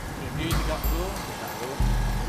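Low rumbling buffets of wind on the microphone that start and stop abruptly, with a knock about half a second in and faint distant voices calling out.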